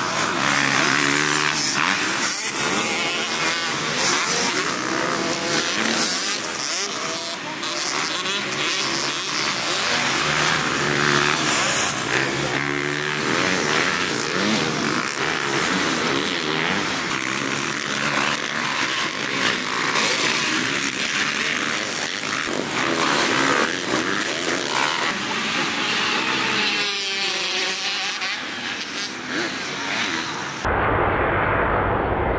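Motocross dirt bike engines revving hard and backing off again and again, the pitch repeatedly rising and falling as the bikes ride the track.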